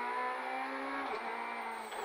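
Peugeot 208 R2B rally car's four-cylinder engine running at a steady pitch, heard from inside the cabin, with a brief break in the note about halfway through.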